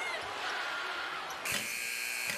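Basketball arena's end-of-period buzzer sounding about one and a half seconds in, a steady electronic horn that is still going at the end, marking the game clock running out at the end of the quarter.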